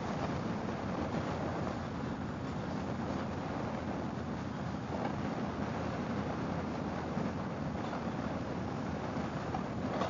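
Harley-Davidson Fat Boy's V-twin engine running steadily at road speed, mixed with wind rushing over the microphone.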